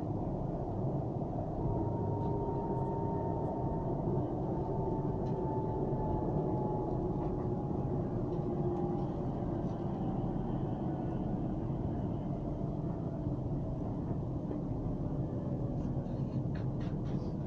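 Metro train running, heard from inside the passenger car: a steady rumble of wheels on rails with a faint electric motor whine that slides slowly down in pitch.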